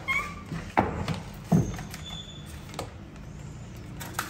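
Books being put away on a wooden shelf: two sharp knocks about a second apart, with light handling noise around them.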